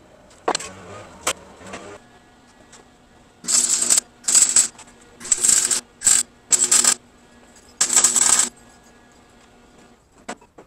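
Electric arc welding: six short crackling bursts of about half a second each as tack welds are laid on a steel vise-mount bracket clamped to the workbench edge, over a steady low hum. A couple of sharp knocks come in the first two seconds.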